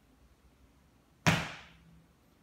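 A single sharp impact a little after a second in, sudden and loud, with a short echo dying away in the room.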